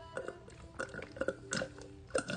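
Sucking the last of an iced drink through a straw from a plastic cup: a series of short gurgling slurps as air and liquid are drawn up together.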